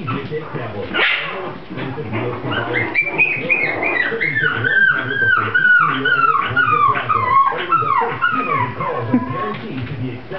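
Mi-Ki puppy whining in a quick run of high, falling cries, about three a second. It starts a couple of seconds in and trails off just before the end.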